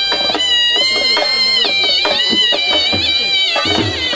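Alghoza (paired end-blown folk flutes) playing a high, held, reedy melody with ornamented bends, over a steady drone, accompanied by dhol drum beats a few times a second.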